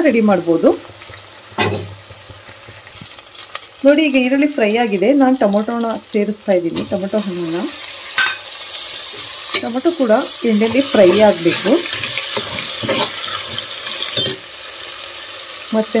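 Sliced onions and whole spices sizzling in oil in an aluminium pressure cooker, stirred and scraped with a steel spoon, with a sharp clink of the spoon on the pot a couple of times. The sizzling grows louder about halfway through, once chopped tomatoes are in the pan.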